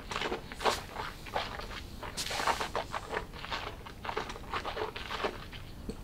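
Small wet clicks and lip smacks from a taster working a sip of whisky around his mouth, with a short breath about two seconds in.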